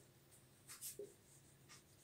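Faint strokes of a marker pen on a whiteboard: a few short scratches just before a second in and another near the end.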